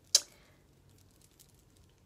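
A single sharp click just after the start, with a brief faint ring: the cap of a liquid eyeliner pen being pressed shut. A few very faint ticks of handling follow.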